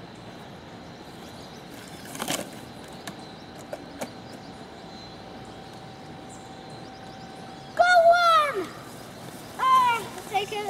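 A child's high-pitched wordless call about eight seconds in, held briefly and then falling in pitch, with a shorter one just before the end. Before that there is a brief rustle and a few light clicks from plants and a plastic bug container being handled.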